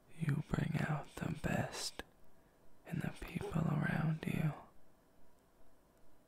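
A man's soft, near-whispered speech in two short phrases, the second starting about three seconds in.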